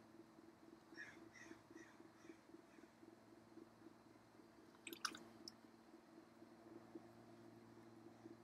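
Faint, low, steady hum of an electric potter's wheel running, with soft wet squishing of clay under the hands as it is centered. A single sharp click comes about five seconds in.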